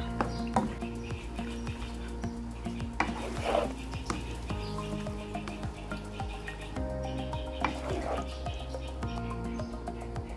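A spatula stirring and scraping penne in a creamy sauce in a nonstick pan, with scattered scrapes and clicks, the clearest about three seconds in and again near eight seconds. Background music plays throughout.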